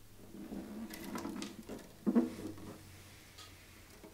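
An early-1960s Hagstrom acoustic guitar being handled and turned over on a carpet-covered bench: rubbing and small knocks of the wooden body, with one louder knock about two seconds in.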